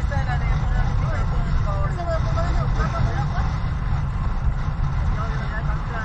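Background chatter of several people talking at once, no one voice clear, over a steady low rumble.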